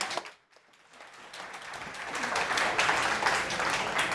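Audience applause: after a brief near-silent gap, many hands clapping build up from about a second in and keep going.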